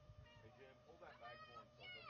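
Near silence with faint, short, distant voices that rise and fall in pitch, heard a few times.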